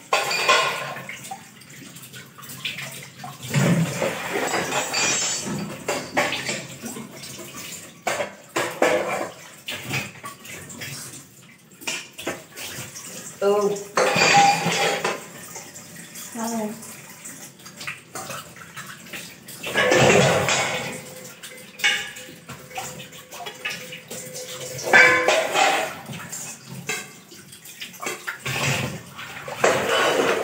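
Tap water gushing in surges a few seconds apart as stainless steel utensils are washed by hand at a kitchen sink, with the clink and clatter of steel bowls and pots being rinsed and set down.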